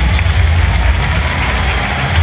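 Stadium crowd din under a deep, bass-heavy rumble from the stadium's PA system, heard through a phone microphone.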